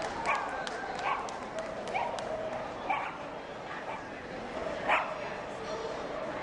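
A dog barking five short, sharp times, about a second apart with a longer pause before the last and loudest bark, over a background of voices.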